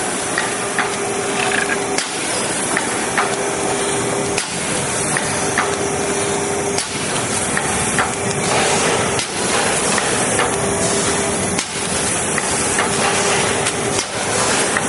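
Bartelt IM714 horizontal form-fill-seal pouch machine running: continuous mechanical clatter with a hiss and a steady hum, sharp clicks and knocks throughout, and a brief dip in the noise about every two and a half seconds as the machine cycles.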